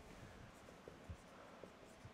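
Marker writing on a whiteboard: faint strokes with a few soft ticks as the tip touches the board.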